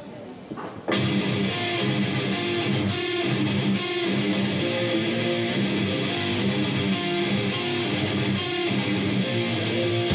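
Live rock band starting a song with an instrumental intro led by electric guitar: a few quiet notes, then about a second in the full band comes in loud and holds a steady driving riff.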